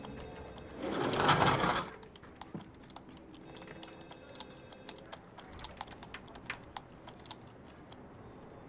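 Typing on a computer keyboard, a quick run of light clicks, over soft background music. About a second in, a loud rushing noise lasts about a second and is the loudest thing heard.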